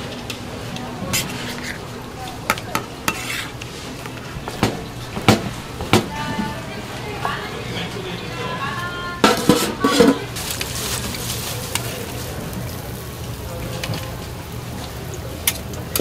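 Food-stall kitchen work: a ladle and utensils clicking and knocking against large metal pans and plastic trays, with a burst of clattering about nine seconds in. A steady low hum runs underneath.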